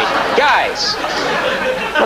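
A man's voice briefly at the start, then a murmur of many voices in a large studio.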